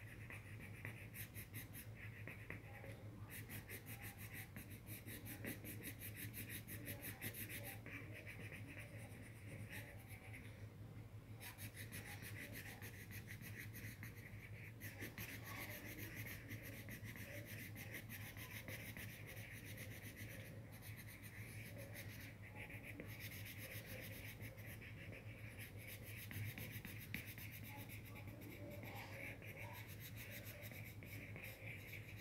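Yellow coloured pencil scratching on notebook paper in fast back-and-forth strokes as a drawing is shaded in, with several short pauses, over a faint steady low hum.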